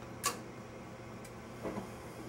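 Furnace draft inducer blower running with a steady low hum, the furnace's start-up stage before the burners light. A single sharp click sounds about a quarter second in.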